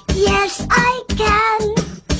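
Children's song: a child's voice singing two short phrases over a backing track with a steady beat.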